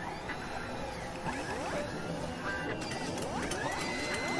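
Electronic intro music with sound effects: repeated rising synthetic sweeps over a dense, steady backing, and a held high tone coming in near the end.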